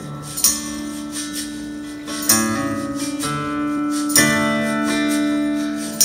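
Acoustic guitar strumming a few chords and letting each ring, with a tambourine jingling along.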